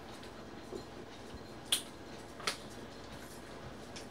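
Two short, faint clicks of small plastic game pieces being handled on a tabletop, as the Bean Boozled spinner is spun.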